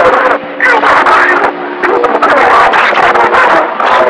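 Radio receiver tuned to distant long-range stations, giving loud, choppy static with garbled voices that can't be understood and a few steady whistle tones underneath.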